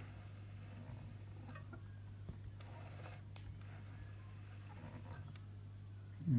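A few faint, tiny metallic tings from a sewing machine's needle grazing the rotary hook as the hook comes round, over a steady low hum. This is the sign of needle timing and position that are out: the needle is hitting the hook.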